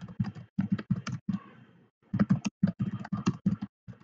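Typing on a computer keyboard: quick runs of keystrokes with a short pause about halfway through.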